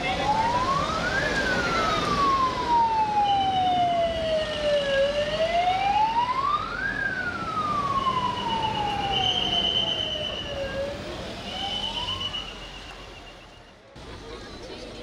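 Siren of a police escort vehicle in a motorcade, sounding a slow wail: it rises over about a second and a half, then falls over about four seconds, twice, with a third rise near the end as the sound fades. A high steady tone sounds over it in three spells.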